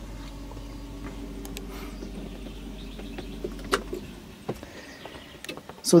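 A steady low mechanical hum inside a truck cab that dies away after a click just before four seconds in, followed by a few light clicks and knocks.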